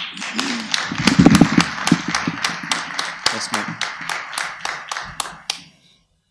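Audience applauding, many hand claps at once with a few voices mixed in, loudest early on and dying away about five and a half seconds in.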